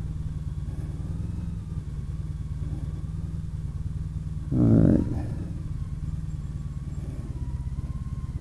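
Honda CTX1300's V4 engine running at low speed as the motorcycle rolls slowly, a steady low rumble.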